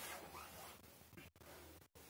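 Near silence: faint room hiss with a soft rustle of movement.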